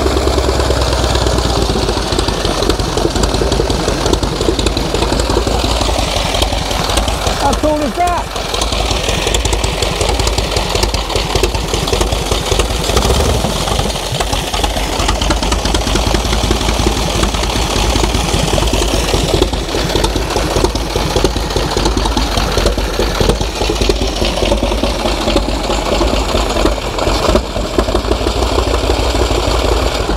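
The Flying Millyard's hand-built 5000 cc V-twin, built from Pratt & Whitney Wasp aero-engine cylinders, idling steadily through its straight-through fishtail exhaust, a fast, even run of heavy firing beats.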